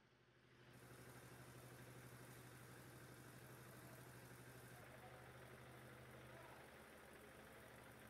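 Near silence: a faint, steady low hum of background sound, starting a moment in.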